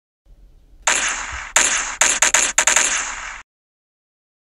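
Gunshot sound effects: one shot, a second shot about half a second later, then a quick run of about six shots, the last cut off suddenly about three and a half seconds in.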